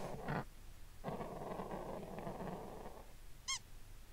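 Faint sound effects from the cartoon: a soft, muffled noise for about two seconds, then a brief high squeak.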